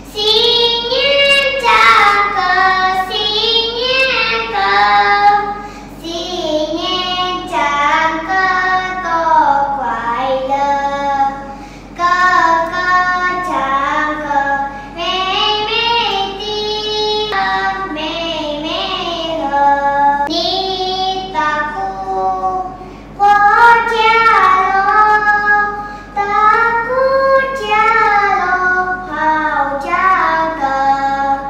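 A young girl singing into a studio microphone during a vocal recording, in phrases with short breaks between them.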